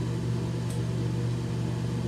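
Steady low mechanical hum, unchanging throughout, with one faint brief high tick a little under a second in.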